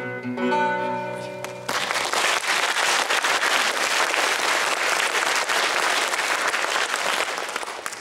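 Closing notes of the acoustic guitar accompaniment ringing out at the end of the song; about two seconds in, the audience starts applauding and keeps up steady applause that begins to die away near the end.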